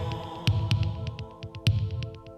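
Music: an instrumental stretch of a French rock song, a held chord over scattered drum hits and low thumps, without singing.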